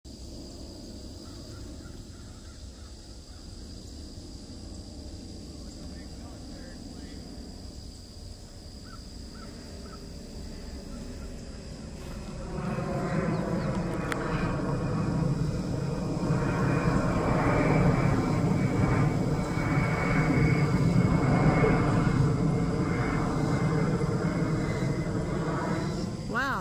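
Gulfstream G650 business jet flying low overhead, its twin Rolls-Royce BR725 turbofan engines faint at first, then swelling loud about halfway through and staying loud, the tone sweeping and shifting as it passes.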